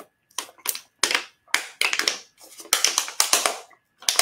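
Thin plastic water bottle crinkling and crackling in the hand as it is tipped up and drunk from, in a run of irregular crackles.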